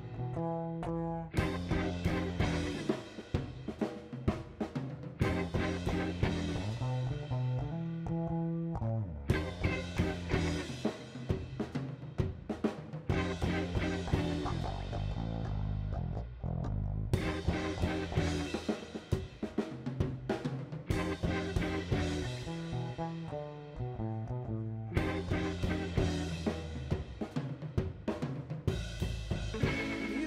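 Electric blues band playing an instrumental passage: electric guitar over electric bass and a drum kit, with no vocals.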